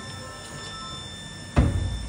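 A Stuart Turner Mainsboost mains-water booster pump kicking in with a sudden clunk about one and a half seconds in, then running with a low steady hum.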